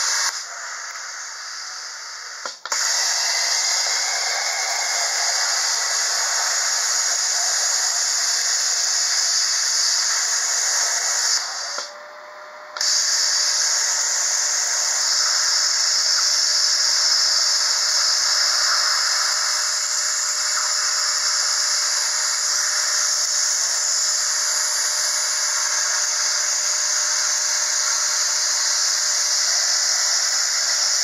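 Cutting torch cutting through the steel plate that held a trailer jack: a steady loud hiss that drops back twice, for about two seconds near the start and for about a second some twelve seconds in, as the cut stops and starts again.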